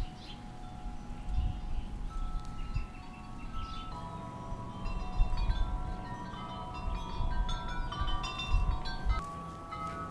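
Wind chimes ringing, many overlapping metal tones that grow denser from about four seconds in. Uneven low rumbling runs underneath.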